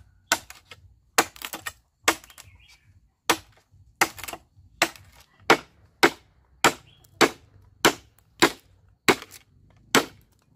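Hooked machete chopping into a bamboo pole: a sharp crack with each stroke, the strokes coming steadily a little under two a second.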